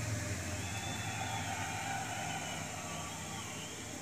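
Steady hiss with a low hum underneath and faint wavering high tones, with no clear event standing out.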